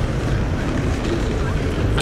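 Wind buffeting a phone's microphone outdoors: a steady low rumble with no clear tone or rhythm.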